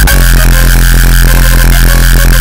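Uptempo hardcore track: a loud, steady distorted bass note held under a sustained high synth tone.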